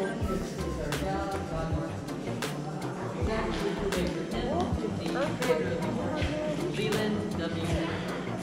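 Luray's Great Stalacpipe Organ playing a tune automatically: rubber-tipped mallets strike tuned stalactites, giving a series of ringing notes, with visitors' voices over it.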